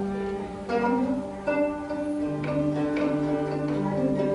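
Arabo-Andalusian malouf ensemble playing an instrumental passage in the hsine mode on plucked and bowed strings, the melody moving through a string of held notes with a few sharp plucked attacks.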